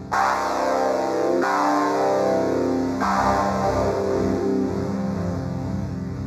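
Sonic Projects OP-X PRO II software synthesizer, an emulation of the Oberheim OB-X, playing sustained polyphonic chords. A new chord is struck about one and a half seconds in and again about three seconds in.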